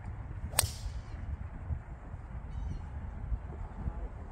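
A TaylorMade SIM driver striking a golf ball off the tee: one sharp, high crack about half a second in, over a steady low wind rumble on the microphone.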